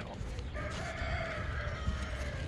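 A rooster crowing once, one long call starting about half a second in.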